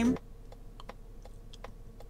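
Turn-signal indicator of a 2024 Mazda CX-90 ticking inside the cabin, about three faint ticks a second. It has a crunchy click that sounds like someone chewing on a frozen walnut.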